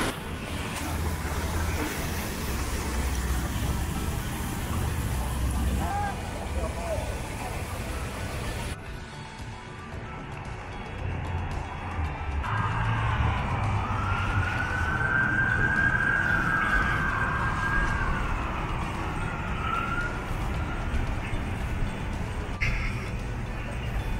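Low outdoor rumble on the microphone, then an emergency vehicle siren wailing: one slow rise and fall in pitch over about six seconds starting about halfway in, with a short return near the end.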